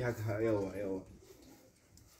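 A person's voice, wavering up and down in pitch, which stops about a second in.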